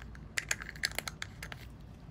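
A quick run of light, sharp clicks and taps, about half a dozen over a second, from long acrylic nails and a nail-art brush knocking against a small plastic gel pot as it is handled.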